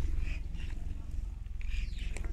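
Wind buffeting the microphone, a steady low rumble, with faint voices in the background.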